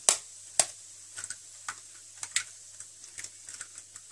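Egg cracked against a metal spoon: two sharp taps about half a second apart, then scattered small ticks.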